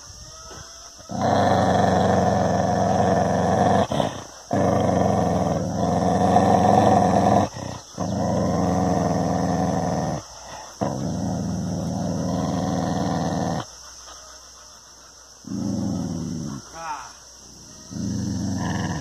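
Dog growling at its own reflection in a mirror: several long, low growls of two to three seconds each, broken by short pauses.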